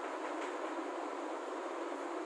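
Steady hiss of room noise with one faint tick about half a second in.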